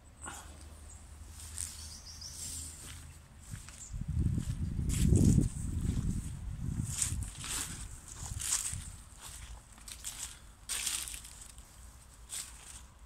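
Footsteps crunching on soil and dry debris, a few sharp crackles through the second half, with a low rumble on the microphone from about four seconds in that is the loudest sound.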